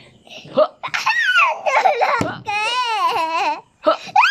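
A young boy laughing in high-pitched bursts, with a longer run of wavering laughter about two and a half seconds in.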